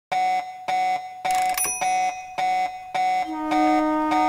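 Electronic alarm clock beeping: a pitched beep repeating a little under twice a second, six times. Near the end, sustained musical tones come in beneath it.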